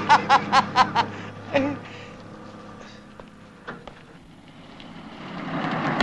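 A man laughing in a quick run of 'ha' bursts, about four a second, that ends about a second in. From about five seconds in a car engine grows louder as the car draws near.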